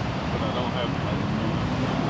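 Steady low rumble of freeway traffic, with a faint voice briefly heard about half a second in.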